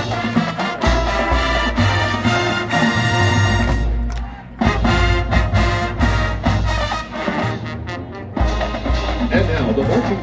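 College marching band playing, brass and drums together in loud sustained chords, with short breaks between phrases about four and eight seconds in.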